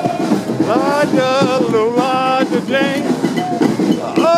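A brass horn in a street brass band playing a melody of held notes, scooping up into the first note about a second in, over crowd noise.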